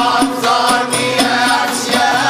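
Traditional Moroccan music: a wavering melody carried over a steady percussion beat of about two strokes a second.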